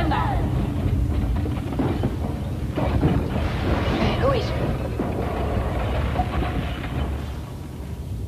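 Film soundtrack mix: a continuous low rumble under music, with a sharp hit about three seconds in and brief vocal exclamations.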